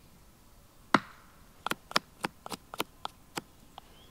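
A large knife blade chopping into a chunk of resin-soaked pine fatwood on a tree stump: one hard chop about a second in, then a quick run of lighter cuts, about three a second.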